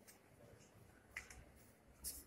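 Near silence: room tone, with one faint, short click a little past the middle.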